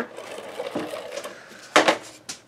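Large handheld adhesive tape runner drawn along the edge of cardstock, laying down a strip of tape with a faint mechanical running noise. A short, louder noise comes near the end as the runner comes off the paper.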